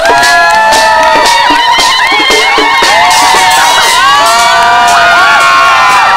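A crowd of many voices shouting and cheering together, with long held calls and whoops, over regular drumbeats.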